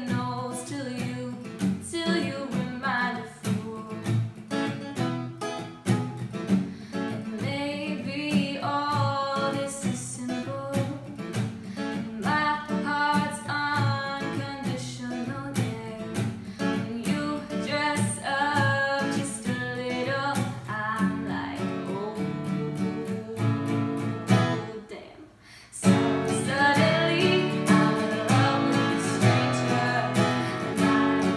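A girl singing a pop song while strumming a steel-string acoustic guitar. Near the end the music briefly drops out, then comes back in louder.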